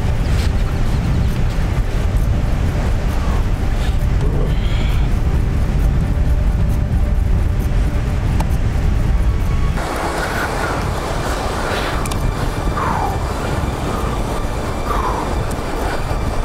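Wind buffeting the microphone in a heavy low rumble; about ten seconds in it gives way abruptly to the steady wash of surf breaking on the beach.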